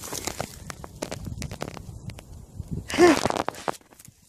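Dry straw stubble crackling and crunching as it is disturbed, a run of small sharp crackles. About three seconds in comes a short, loud vocal sound from the person.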